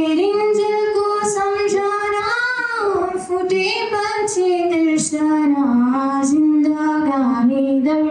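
A young woman singing solo and unaccompanied into a handheld microphone, in long held notes with slow glides in pitch.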